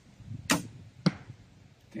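Doom Armageddon crossbow shooting a 20-inch Shatun bolt: a sharp crack as the string is released, then about half a second later a second, louder sharp knock of the bolt striking the target.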